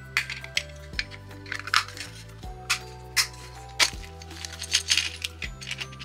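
Light background music with a steady low bass line, over irregular small clicks and taps of plastic miniature-kit pieces being handled and pressed together.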